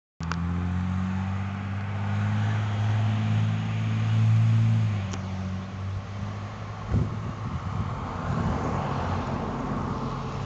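A motor running with a steady low hum that fades out about five seconds in, followed by a rough low rumble with a single knock about seven seconds in.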